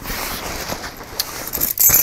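A hand rummaging in a fabric backpack pocket, with steady rustling and a few small clicks, then a bunch of keys jingling as they are pulled out near the end.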